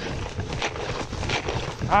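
Hurried footsteps in deep snow, an uneven run of soft crunching steps, with wind on the microphone. A man's voice starts right at the end.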